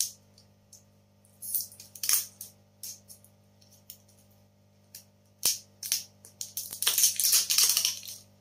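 Plastic wrapping crinkling as it is peeled off a lipstick tube by hand. It comes in short bursts, with a sharp click about five and a half seconds in, and a longer stretch of continuous crinkling near the end.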